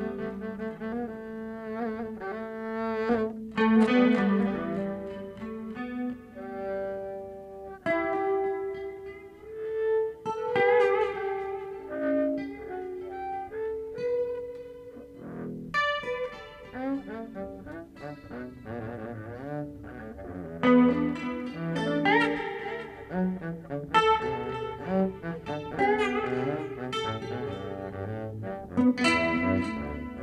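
Double bass played with the bow in long held and sliding low notes, with a guitar playing alongside; the playing turns busier, with shorter notes, about halfway through.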